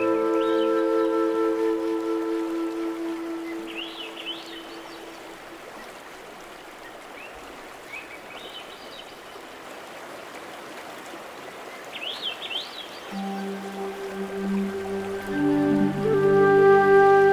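Soft sustained new-age music tones fade out over the first few seconds, leaving a steady rush of running water with a few short, quick bird chirps. The music swells back in about three seconds before the end.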